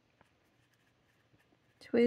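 TWSBI Eco fountain pen with a broad nib writing on planner paper: a faint scratching of the nib with a couple of light ticks.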